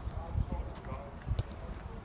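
Footsteps on grass: a few soft, low thuds, with faint voices in the background.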